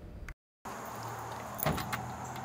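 After a brief gap of silence, keys jangle and a key works the lock of a glass shop door, with a few sharp clicks near the end over a steady low hum.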